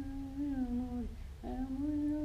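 A person humming a song's melody in two long held phrases, with a short break just after a second in. The notes stay mostly level, with small steps in pitch.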